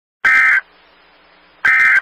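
Emergency Alert System end-of-message data bursts: two short, harsh, buzzing bursts of digital tones, one about a quarter second in and one near the end, with faint hiss between them. The bursts signal the close of the alert.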